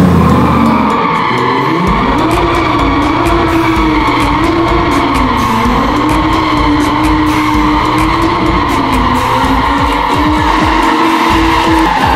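Lamborghini Huracán EVO's V10 engine revving as the car spins donuts on a smooth concrete floor, its pitch rising and falling with the throttle, and the tyres skidding and squealing throughout.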